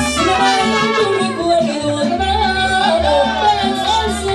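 A live mariachi band playing, with a singer carrying the melody over the band's accompaniment and a regular pulse of low bass notes.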